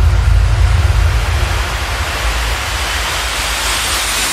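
Electronic background music in a transition: a deep bass fades out under a white-noise riser that builds and brightens, with a faint whistle-like tone gliding upward inside it.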